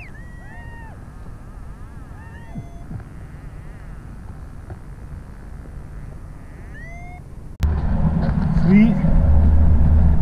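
Several short, high whistled chirps that rise and fall in pitch, typical of birds calling, over a low steady background. About seven and a half seconds in, this cuts suddenly to a loud, steady low rumble of pickup-truck engine, road and wind noise heard from riding in the open truck bed.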